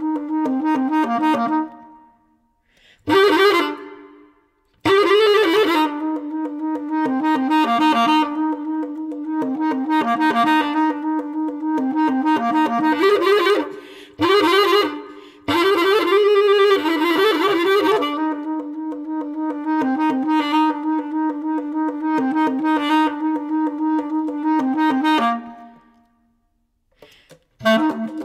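Experimental bass clarinet music: long held low notes with stretches of silence between phrases, and a few harsh, noisy notes.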